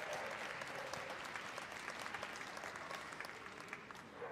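Arena audience applauding: many hands clapping in a steady patter that thins a little toward the end.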